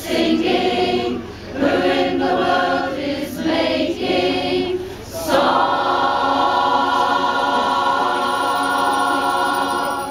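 Mixed-voice community choir singing unaccompanied: a few short sung phrases, then a long held final chord from about halfway through that stops near the end.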